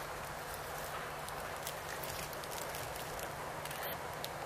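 ČSD T 435 'Hektor' diesel locomotive running at low speed as it hauls a short train toward the listener, a steady low engine hum under a wash of noise, with scattered light clicks from the wheels on the track.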